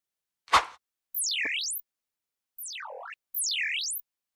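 Synthesized intro sound effects: a short sharp hit about half a second in, then three swooping electronic tones, each gliding down in pitch and back up, with gaps between them.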